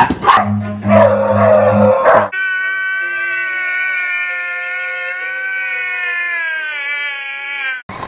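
A dog lunging and snarling for about two seconds, then a man's long drawn-out wailing cry, one held note lasting about five seconds that sags slightly in pitch before it cuts off.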